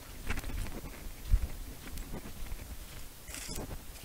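Footsteps through grass and dry leaf litter: soft, irregular rustles and light thumps, with one heavier thump about a second and a half in.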